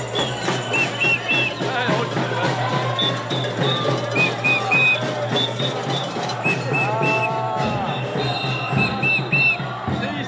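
Protest-march music with a steady beat, cut through by quick groups of three short whistle blasts every few seconds, over a crowd.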